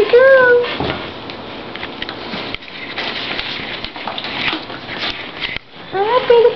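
Bengal kitten giving one short rising-and-falling mew at the start, then scuffling and rustling sounds as she plays.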